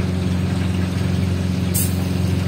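Steady low hum and rush of commercial kitchen equipment, such as an exhaust hood fan or gas burner, with a short high hiss near the end.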